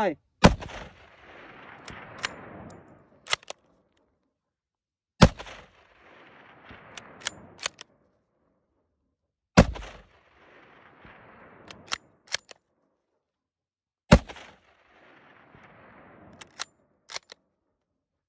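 Four shots from a Kar98k bolt-action rifle in 8mm Mauser, about four and a half seconds apart, each followed by a long rolling echo. Between shots come two or three sharp clicks of the bolt being worked.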